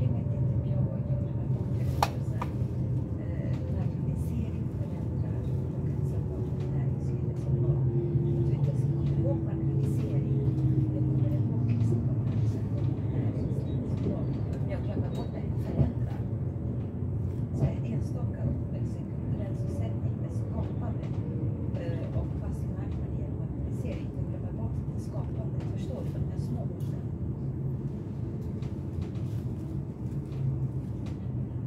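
Steady low rumble of a commuter train heard from inside the passenger car as it runs along the track, with faint clicks and a faint whine that falls in pitch about ten seconds in. The train is coming into a station, and the rumble eases a little in the second half.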